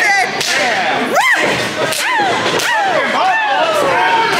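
A sharp open-hand chop slapping a wrestler's bare chest in the ring, followed by spectators shouting in long rising and falling yells.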